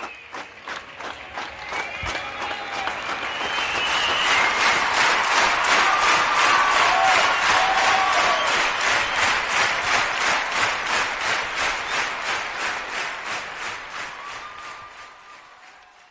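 Crowd applause with clapping in a steady rhythm, about three claps a second, and a few voices calling out over it; it swells over the first few seconds, holds, then fades away near the end.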